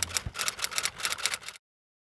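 Typewriter sound effect: a quick, even run of key clacks, several a second, as on-screen text is typed out letter by letter. It cuts off suddenly about one and a half seconds in.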